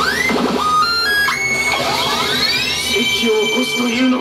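Pachislot machine's electronic sound effects over its game music: a quick rising glide, a run of tones stepping up in pitch, then a long rising tone that levels off and holds. This is the build-up to a game-count add-on, which lands as +300 games.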